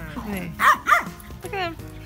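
Dogs barking in play, three short pitched barks about half a second, one second and one and a half seconds in.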